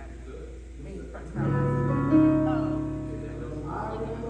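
A musical instrument sounds a chord about a second and a half in and another just after, both ringing on and slowly fading.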